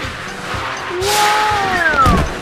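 Background music with an edited-in cartoon whoosh sound effect about halfway through, followed by sliding tones that fall in pitch toward the end.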